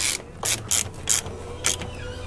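Ratcheting box-end wrench clicking in a few short, irregular strokes as it runs down a thermostat housing bolt.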